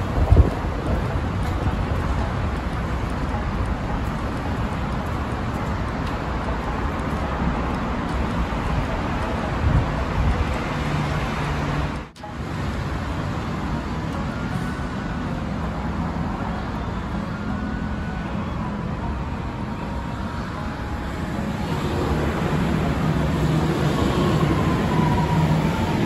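Steady city road-traffic noise, then an Okinawa Monorail (Yui Rail) train pulling into the station in the last few seconds, growing louder with a faint falling whine as it slows.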